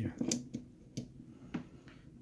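A few light clicks and taps of small metal parts of a disassembled Honeywell VR9205 gas valve being handled, its main solenoid assembly fitted against the valve body, after a brief spoken word.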